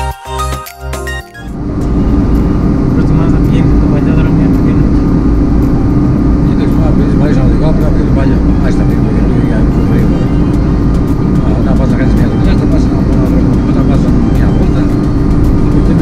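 Music that stops about a second and a half in, followed by the loud, steady drone of road and engine noise inside a car's cabin cruising at highway speed.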